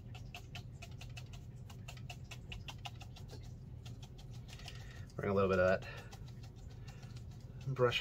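A worn flat bristle brush dabbed quickly and repeatedly onto watercolour paper, stamping texture for foliage and overgrowth: a run of light taps, about six a second, that stops about halfway through. A short vocal sound about five seconds in is the loudest moment.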